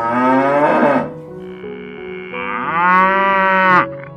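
A cow mooing twice, a short call with falling pitch at the start and a longer call near the end that cuts off suddenly, over soft background music.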